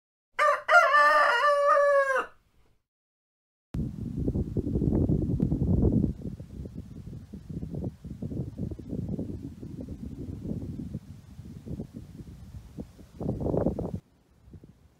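A rooster crows once, a call of about two seconds. After a short silence comes a low, uneven rumble of wind on the microphone that lasts to the end, with a stronger gust near the end.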